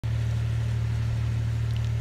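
Steady low machinery hum from the asbestos removal work, an even engine-like drone with no change in pitch.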